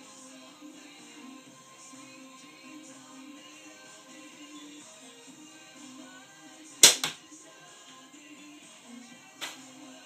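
A slingshot being shot: a single sharp snap of the bands and pouch on release about seven seconds in, with a second, quieter crack a fraction of a second later as the shot strikes the target. A fainter click follows near the end, over background music.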